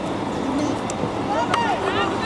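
High-pitched shouts from young players and onlookers at an outdoor football match, loudest about one and a half seconds in, with a single sharp knock at the same moment. Underneath runs a steady outdoor noise.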